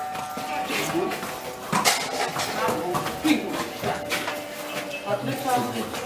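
Indistinct voices talking, with several sharp clinks and knocks scattered among them.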